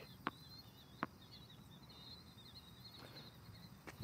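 A tennis ball bounced twice on a hard court before a serve, two short sharp taps about a quarter second and a second in. Under them is a faint, steady high chirping.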